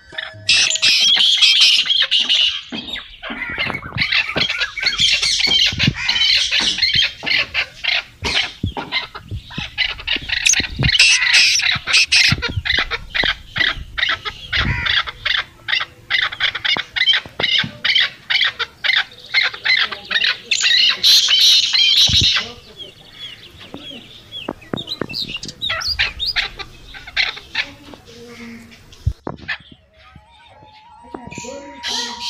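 Many birds chirping and squawking together in a dense, loud chorus. About two-thirds of the way through it breaks off suddenly to scattered, sparser chirps.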